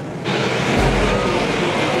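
A pack of dirt modified race cars running at speed on a dirt oval: many engines blending into one steady, loud noise.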